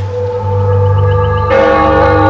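Background music of held, steady chords over a low drone, growing fuller as more notes come in about a second and a half in.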